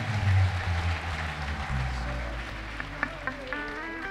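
Live church music with low held instrumental notes under a wash of congregation noise like applause, the crowd noise fading away. A steady, higher held note comes in near the end.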